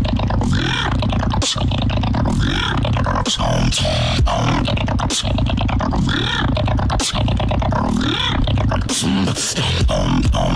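Beatboxing: deep, sustained mouth bass under sharp, snare-like clicks in a quick beat. The bass briefly drops out near the end.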